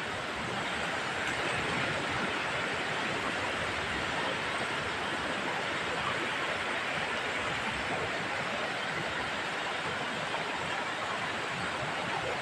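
Steady hiss of wind and rough sea surf on an open beach, even in level, with no distinct events.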